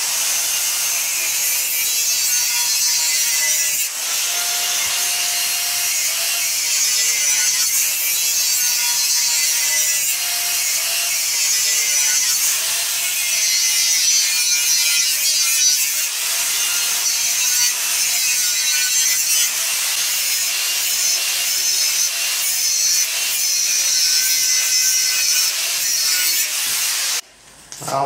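Angle grinder with a thin cut-off wheel cutting through steel square tube: a steady, high-pitched grinding hiss with the motor's whine wavering slightly under load. It eases briefly about four seconds in and stops just before the end.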